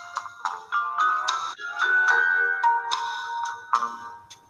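A recorded song playing from a smartphone's speaker held up to a webcam and heard over a video call: notes start one after another and are left to ring, with no voice.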